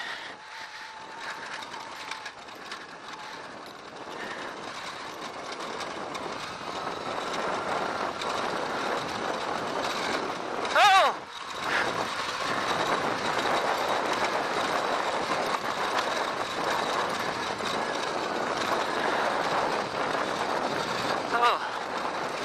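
Wind rushing over a helmet-mounted microphone, with tyre and trail noise from a Sur-Ron Light Bee electric dirt bike descending a steep dirt trail at around 25 mph. The noise grows louder as speed builds a few seconds in, and there is no engine note, only a faint motor whine. The rider gives a brief shout about halfway through.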